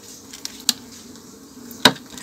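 Low, steady buzzing of stingless Melipona bees in an opened hive box, broken by a short click and then a louder sharp click near the end.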